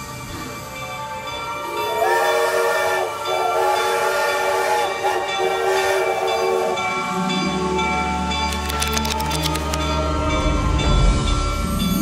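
Steam locomotive whistle blowing a steady chord of several notes, starting about two seconds in and held for several seconds. A deep low rumble joins it in the second half.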